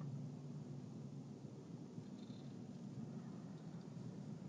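Faint, steady low hum of a truck's engine and tyres heard inside the cabin as it drives slowly, with a brief faint high tone about two seconds in.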